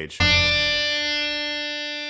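A single musical note, struck sharply a moment in and left to ring, fading slowly and evenly.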